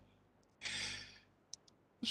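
A man's breath close to a headset microphone: one sigh-like breath of about half a second, followed by two faint mouth clicks.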